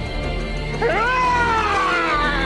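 A girl's long, high-pitched scream, starting about a second in, rising sharply and then slowly falling, over a low droning score.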